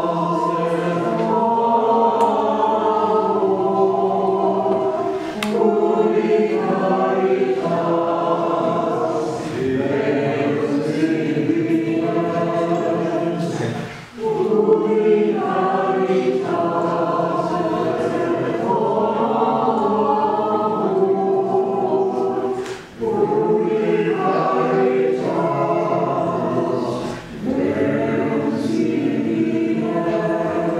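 A choir singing a hymn in long sustained phrases, with short breaks between phrases.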